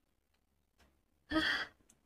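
A woman's single breathy sigh, lasting under half a second, about a second and a half in.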